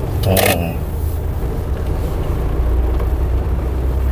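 Steady low rumble of a car's engine and tyres, heard from inside the cabin while driving slowly. A brief voice-like sound comes about half a second in.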